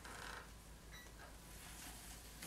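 Near silence, with a faint scrape of a sculpting tool against clay in the first half-second and a small tick about a second in.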